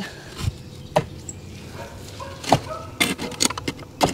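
A few scattered clicks and light knocks as the black corrugated plastic drain pipe is handled and the reciprocating saw is set against it: one about a second in, then a small cluster near the end.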